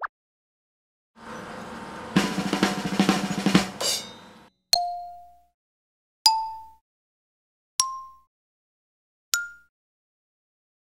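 Cartoon sound effects for stacking shapes: a rattling drum roll, then four short ringing plinks about a second and a half apart, each higher in pitch than the one before, one for each shape placed on the tower.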